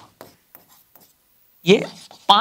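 A stylus writing on a large interactive touchscreen board: a few faint, short strokes and taps in the first second. A man starts speaking near the end.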